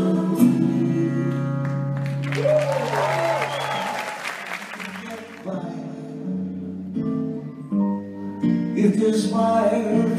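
A live band ends on a held chord, and the audience applauds, with a whistle gliding up and down. Then a solo acoustic guitar starts playing chords in the hall.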